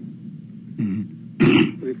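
A man clears his throat: one short harsh burst about one and a half seconds in, between stretches of speech.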